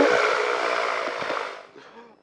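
Steady engine and wind noise from a weight-shift microlight rolling on a grass strip, heard through the pilot's headset intercom. It fades away to silence near the end.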